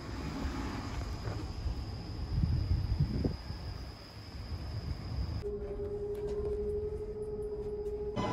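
Outdoor night ambience: a steady high-pitched trill or whine over a low rumble, with a louder low rumbling patch about two and a half to three seconds in. About five and a half seconds in, the sound cuts abruptly to a steady low hum with a few faint clicks.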